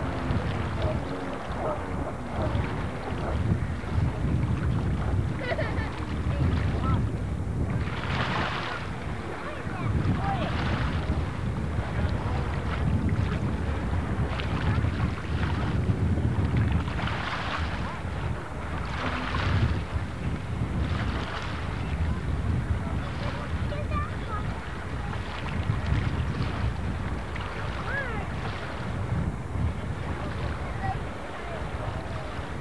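Wind buffeting the camcorder microphone in gusts, over the distant drone of a jet ski's engine running across the water.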